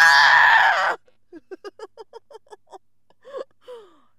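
A woman's loud wailing cry for about a second, then a run of short quick breathy vocal pulses, about seven a second, and two short falling moans near the end: an emotional sobbing reaction.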